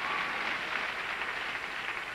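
Audience applauding: a steady wash of clapping that eases off slightly toward the end.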